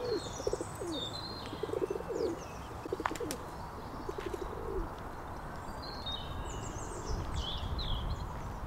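Birds calling: a low, pulsed cooing call repeats in short phrases through the first five seconds or so, while small birds chirp high above it throughout. A low rumble swells near the end.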